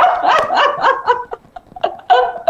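Two women laughing together, a quick run of short bursts that fades out after about a second.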